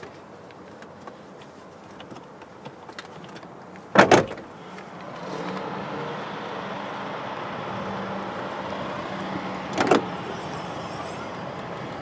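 Two sharp clunks from a 1996 Corvette coupe's body, about four seconds in and again near ten seconds, as the car is worked open to get at the engine bay; after the first clunk a steady low hum sets in and carries on.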